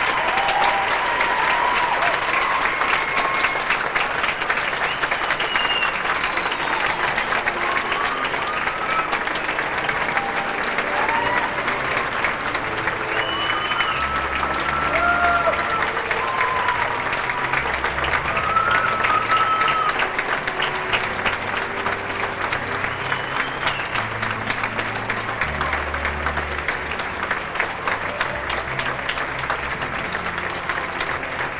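A large audience applauding steadily, with scattered whoops and cheers rising above the clapping.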